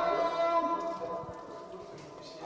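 A voice singing a long, slowly wavering note in a melodic style, fading out about a second in; a quieter mixed background follows.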